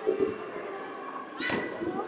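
Echoing sports-hall ambience with faint children's voices, and a single sharp thud of a football being struck about one and a half seconds in.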